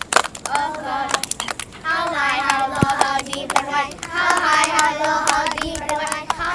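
A group of children singing an action song together, with scattered hand claps.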